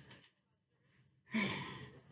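The sound cuts out to dead silence for about a second as the microphone is unplugged. Then a boy gives one audible breathy sigh.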